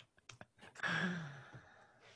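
A man's long sighing breath out as a laugh dies down, about a second in, falling in pitch, after a few faint clicks.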